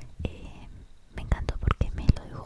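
Soft close-up whispering, with a quick run of sharp clicks and taps in the second half as hair is handled close to the microphone.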